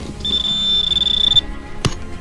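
Handheld metal-detecting pinpointer sounding one steady high-pitched tone for a little over a second, its alert that the probe is right over a metal target. One sharp knock follows near the end.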